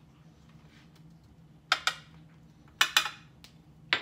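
A small glass bowl clinking against a stainless steel mixing bowl as cream of tartar is tapped out of it: two pairs of sharp clinks about a second apart, each with a short ring, then one more clink near the end as the glass bowl is set down.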